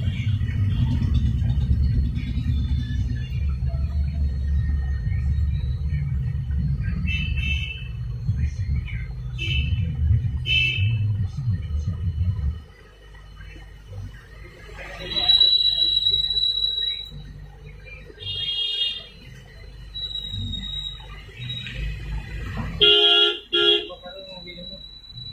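Street traffic: a steady low rumble that cuts off about halfway through, with several short vehicle horn toots and a loud horn blast near the end.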